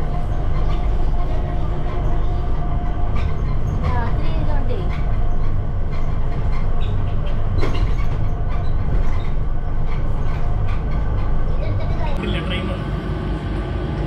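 Airport Skytrain people-mover carriage in motion, heard from inside: a loud, steady low rumble with a faint steady whine over it.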